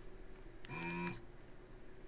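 Desoldering gun's vacuum pump running for about half a second, a short hum with a rush of suction air, drawing solder off a joint on the radio's circuit board.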